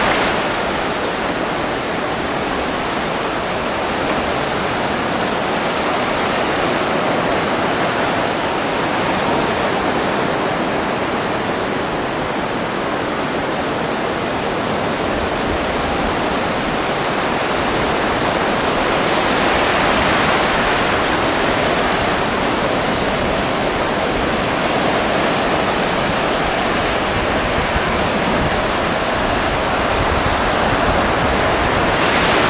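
Ocean surf breaking on a sandy beach: a continuous wash of waves, swelling louder about twenty seconds in.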